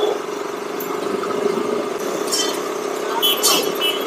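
Single-cylinder KTM motorcycle engine running steadily at low road speed, heard from the rider's seat over wind and road noise.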